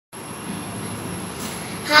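Steady room noise with a faint, constant high-pitched whine. A boy's voice starts speaking right at the end.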